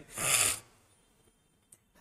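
A man's short, sharp breath in close to a microphone, lasting about half a second, with a tiny click near the end.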